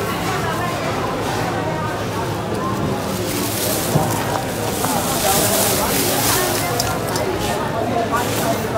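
Busy market chatter, many voices overlapping. A hiss of dry grain poured from a bowl into a plastic bag comes through from about five to six and a half seconds in.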